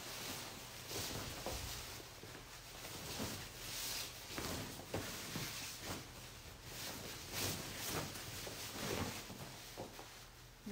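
Stiff, slightly starchy art-silk brocade sari fabric rustling in a series of swishes as it is unfolded and shaken out, over a faint steady low hum.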